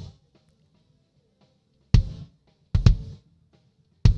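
Recorded kick drum played through the Mackie DC16 console's noise gate on the kick channel. There are three hits, one about two seconds in and a quick pair near the end. Between the hits the gate, with its range turned down, pulls the sound almost to silence.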